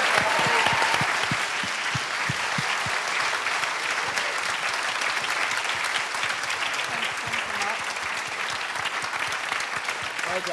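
Audience applauding, a little louder in the first couple of seconds and then steady.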